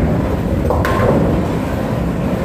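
Bowling alley din: bowling balls rolling with a steady rumble down the lanes, with one sharp click a little under a second in.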